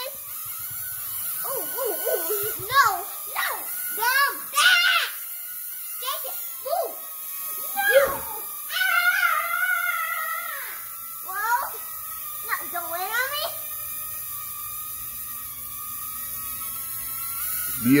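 Excited children's wordless squeals and whoops over the steady high-pitched hum of a small light-up UFO flying toy's propeller as it hovers.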